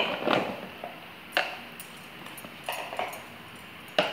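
Chopped raw mango pieces tumbling from a paper bowl into a plastic tub, nudged along with a plastic spoon: a few sharp knocks and light clatters, the loudest about one and a half seconds in.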